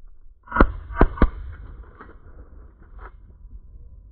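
Three shotgun shots in quick succession, the first about half a second in and the last just over a second in, each with a short echo. Several waterfowl hunters are firing from a blind at a bird passing overhead.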